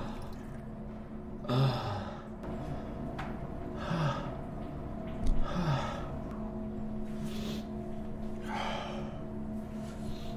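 A man's heavy, strained breathing: four gasping breaths and sighs, some starting with a short low grunt, spaced a couple of seconds apart. It is the sound of someone straining in distress.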